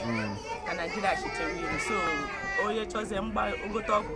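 Speech: a woman talking, with children's voices in the background.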